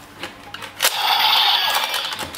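A click, then a loud hissing burst of about a second from the speaker of a DX Zero-One Driver toy transformation belt, a sound effect of its transformation sequence, fading near the end.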